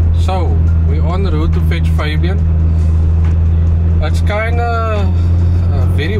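Steady low drone of a car driving, heard inside the cabin, under a man talking.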